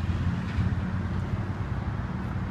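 Truck engine idling: a steady low rumble.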